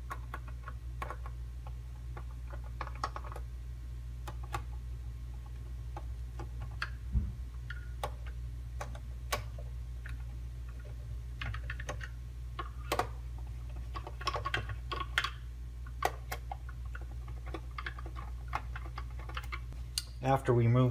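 Hand screwdriver turning out screws from the plastic bottom of a Sony XDR-F1 HD radio: irregular small clicks and ticks of the tool, the screws and the case being handled, busier in the second half, over a steady low hum.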